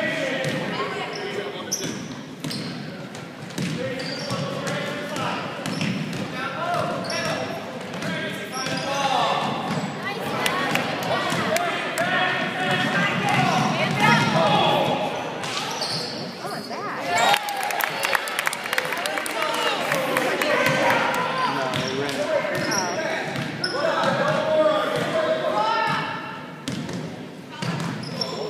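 A basketball being dribbled and bouncing on a hardwood gym floor, with shouts and chatter from players, coaches and spectators echoing around the gym.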